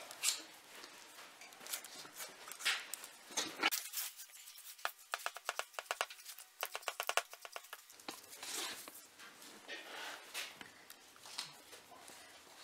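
Small knife blade cutting and scraping tight along a deer's skull as the cape is skinned free around the ear base: a string of short faint clicks and scrapes, with a quick run of rapid, even clicks for a few seconds in the middle.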